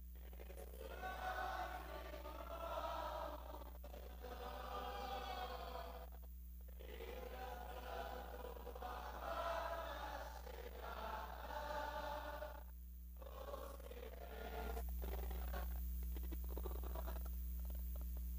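Faint voices of a church congregation worshipping aloud: a chant-like wash of many voices that breaks off briefly twice. A steady low hum comes up near the end.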